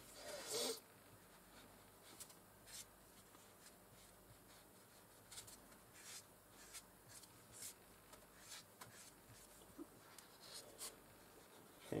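Faint, intermittent light scratching and rubbing as a ball tool is worked over a soft polymer clay petal on a foam pad, in short separate strokes.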